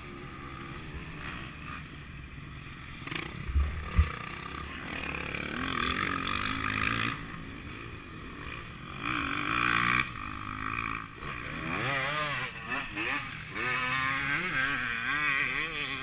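Two-stroke engine of a KTM 150 SX motocross bike running at low speed, its revs rising and falling again and again in the second half. Two low thumps come about four seconds in.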